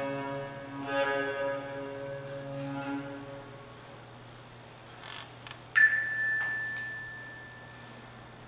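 The last held chord of a played music track, with a low drone under it, fades out over the first three seconds. About six seconds in, a single struck bell-like ding rings out clearly and decays for about two seconds, with a smaller tap just after it.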